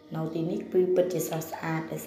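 Speech only: a person talking in quick, broken phrases.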